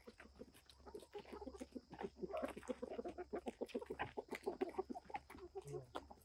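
A flock of chickens clucking as they feed, many short clucks coming thick and fast and getting busier from about two seconds in.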